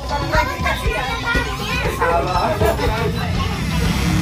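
Music playing, with voices talking or chattering over it.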